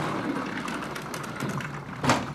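Large sliding chalkboard panel rumbling steadily along its track as it is moved.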